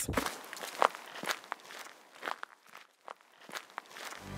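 Cartoon footstep sound effects: a string of light, irregularly spaced steps, about seven or eight over three seconds.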